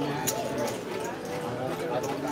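Low talking voices around a casino card table, with one sharp click about a quarter second in.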